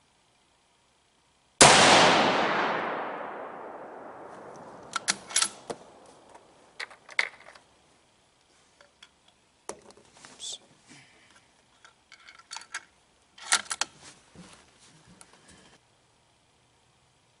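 A single shot from a Savage 12 FV bolt-action rifle in 6.5 Creedmoor about a second and a half in, its report echoing and dying away over a few seconds. Afterwards come scattered metallic clicks and clacks as the bolt is worked to eject the spent case and chamber the next round.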